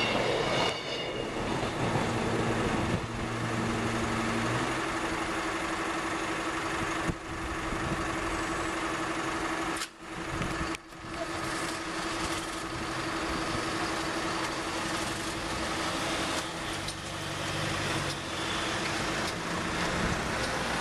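A level crossing's warning alarm sounds as one steady tone while the tail of a British Rail Class 158 diesel multiple unit clears the crossing, its diesel engine running for the first few seconds. The alarm stops about two-thirds of the way in as the barriers rise, and road vehicles' engines are heard moving off near the end.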